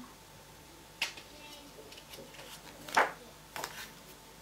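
A picture book's page being turned by hand: a soft click about a second in, then a brief paper swish about three seconds in, with a few small handling sounds after it.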